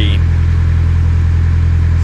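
Narrowboat's diesel engine running steadily under way, a constant low hum.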